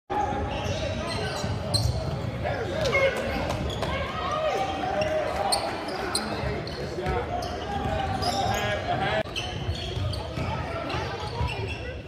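Basketball game on a hardwood gym court: the ball bouncing repeatedly, sneakers squeaking, and indistinct voices of players and spectators calling out, all echoing in a large hall.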